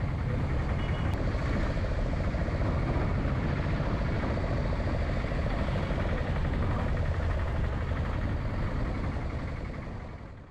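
Steady road and vehicle noise from travelling along a road, with wind on the microphone, fading out near the end.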